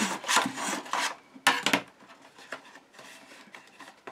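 Metal ruler rubbing and scraping against cardstock inside a paper gift box as the glued base is pressed down: a few short scrapes, the loudest about a second and a half in, then fainter rubbing of card.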